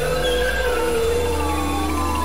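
Experimental electronic music: several layered, slowly wavering tones over a steady low drone, which shifts up in pitch about a second in.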